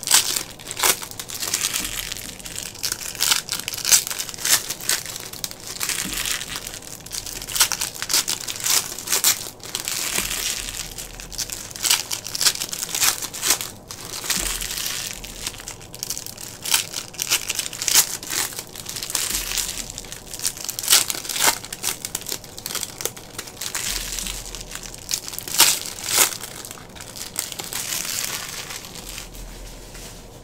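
Foil wrappers of hockey card packs crinkling as they are torn open and emptied by hand: a dense, irregular run of crackles that dies away near the end.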